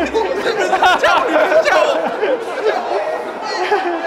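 Several men talking over one another: overlapping conversational chatter.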